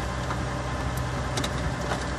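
A 2004 GMC Envoy's 4.2-litre six-cylinder engine idling steadily, heard from inside the cabin. A few light plastic clicks come in the second half as the overhead sunglasses holder is handled.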